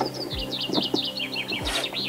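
A songbird singing a quick run of about a dozen short chirps that fall steadily in pitch over nearly two seconds, with a steady low hum and a couple of light knocks beneath it.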